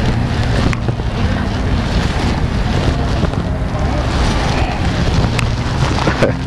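Wind buffeting the camera microphone: a steady, rumbling noise heaviest in the low end, with a couple of faint brief clicks.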